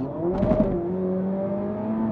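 Ferrari SF90 Stradale's twin-turbo V8 hybrid powertrain accelerating at full throttle in wet mode, heard from inside the cabin. There is a brief burst about half a second in, then the engine note climbs steadily.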